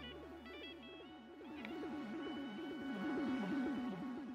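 Electronic background music with a quick repeating pulsing figure under steady held tones, beginning to fade near the end.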